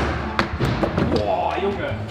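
Skate-scooter (a small plastic skateboard with a handlebar) striking a wooden kicker ramp during a trick attempt: two sharp thumps about half a second apart at the start, over background music.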